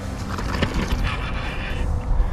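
Wind rumbling on the microphone, with a few short knocks and rustles of handling.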